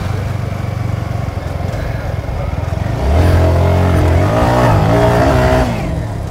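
Motorcycle engines running at low speed. About halfway in, a louder engine note rises and falls as a rider revs.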